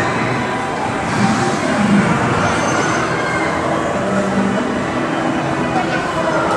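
Loud, steady background ambience of a busy exhibition hall: a dense wash of noise and hum with indistinct voices mixed in.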